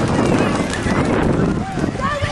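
Distant shouting voices of rugby players and spectators calling out around a ruck, over a steady low rumble.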